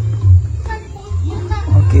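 Loud, uneven low rumble buffeting the phone's microphone, with short speech near the end.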